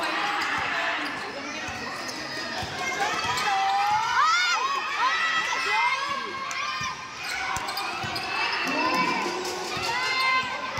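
Basketball dribbled on an indoor hardwood-style court, with short high squeaks of sneakers on the floor as the players move, under the voices of the crowd in a large hall.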